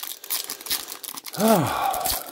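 Foil trading-card pack wrapper crinkling as hands work it, in a rapid irregular crackle. About a second and a half in comes a short vocal sound that falls in pitch.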